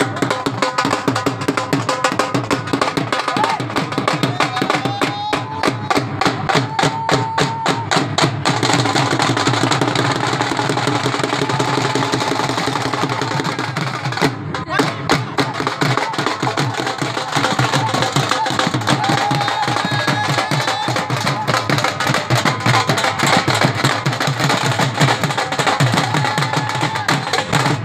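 Several dhols played together in a fast, driving bhangra rhythm, dense drum strokes without a break.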